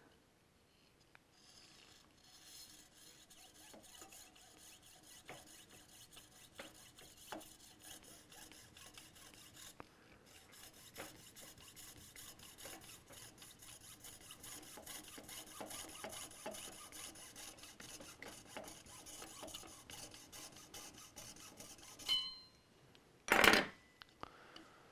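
Fine-toothed jeweler's saw cutting through a carbon fiber rod in a vise: a quiet, rapid, steady run of small back-and-forth strokes. The sawing stops shortly before the end, and a brief louder rush of sound follows.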